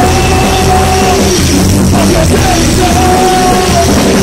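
Rock band playing loudly in rehearsal, with drum kit and electric guitar, and a long held melody note that sounds twice, near the start and again in the second half.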